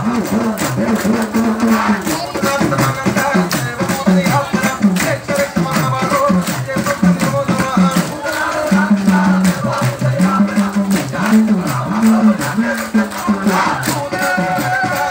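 Amplified devotional chanting music for an akhanda namam: a low melody in held, stepping notes over a quick, steady beat of rattling, jingling percussion.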